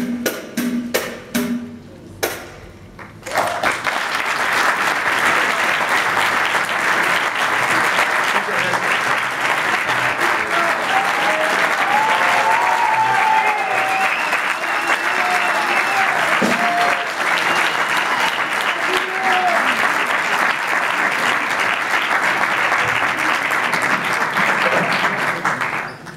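A few last rhythmic hand-percussion strikes end a piece, a short lull follows, then an audience claps steadily for about twenty seconds, with some cheering voices partway through.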